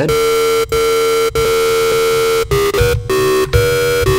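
Xfer Serum software synthesizer sounding a sustained, buzzy, harmonic-rich tone, retriggered several times, with a brief drop in pitch a little before three seconds in. Its timbre shifts as individual harmonic bins of the wavetable are adjusted in the FFT editor.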